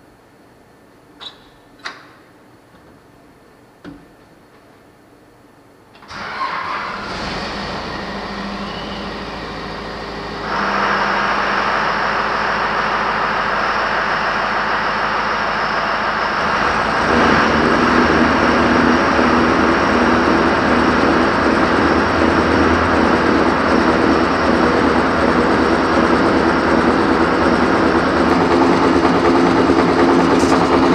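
A few knocks, then a sand truck's engine starts abruptly about six seconds in and runs steadily. The sound grows louder in two steps as the truck's newly belted conveyor is set running so its spring-loaded tensioner can take up the belt.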